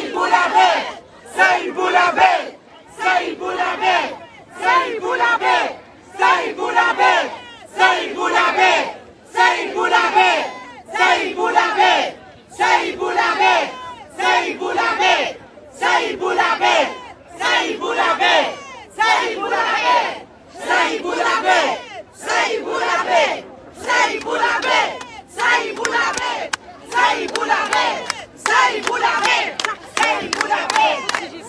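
Large crowd of protesters chanting a short slogan in unison, repeating it over and over in a steady rhythm of about one shout a second.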